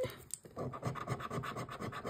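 A coin scratching the coating off a scratch card's play panels in rapid, even strokes, starting about half a second in.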